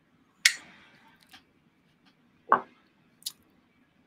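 A man sipping a drink from a small glass: a few separate short wet mouth and glass sounds, the loudest about two and a half seconds in.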